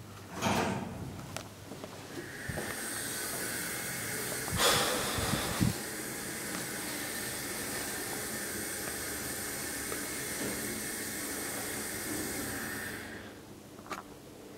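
IGV roped-hydraulic elevator travelling in answer to a call: a steady hissing whine of the hydraulic drive that starts about two seconds in and stops about a second before the end. A few knocks about five seconds in are the loudest sounds.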